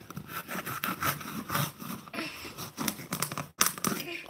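Knife sawing and tearing through a soccer ball's cover: an irregular run of rough scraping and crunching strokes as the blade works through the outer layer into the foam beneath.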